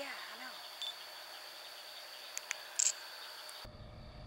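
A low voice says "yeah", then a quiet camcorder recording: a steady high-pitched electronic whine over hiss, with a few faint clicks of the camera being handled. Shortly before the end the sound cuts abruptly to a louder low rumble.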